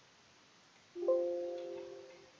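A computer alert chime sounds about a second in, two quick notes that ring on and fade. It signals Revit's warning that a line is slightly off axis and may cause inaccuracies.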